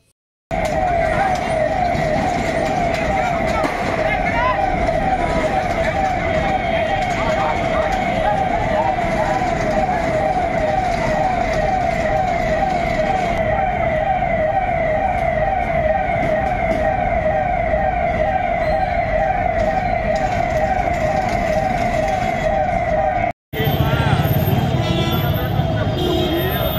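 Fire engine siren wailing in rapid, evenly repeating sweeps of pitch, a few per second. It cuts off abruptly near the end, giving way to street noise with voices.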